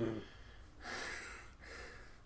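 A man's brief 'mm', then a single soft breathy exhale, like a stifled laugh through the nose, lasting about half a second.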